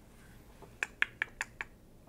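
A quick run of about six short, sharp clicks, evenly spaced at about five a second, over faint room tone.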